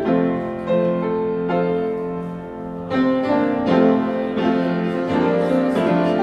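Piano playing a hymn in full chords, the introduction before the congregation joins in. The playing grows louder about three seconds in.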